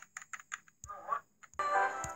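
A quick series of light clicks, a brief snatch of voice about a second in, then music cutting in about one and a half seconds in.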